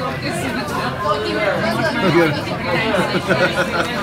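Several voices chattering at once, with no clear words.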